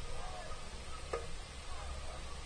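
Outdoor ballfield ambience: a steady low wind rumble on the microphone with a few faint, distant rising-and-falling calls. One short, sharp sound comes about a second in.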